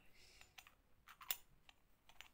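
A few faint clicks from a small engraved metal lidded bowl being turned in the hand, its lid shifting on the rim; the loudest click comes just after a second in.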